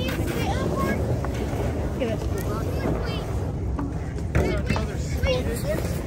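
Voices of people calling in the background over a steady low rumble of wind on the microphone, with a brief knock about four and a half seconds in.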